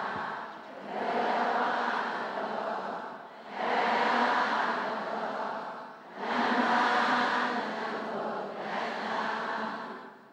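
A large group of voices in Buddhist chanting in unison, in four phrases of about two and a half seconds each with short pauses for breath between them.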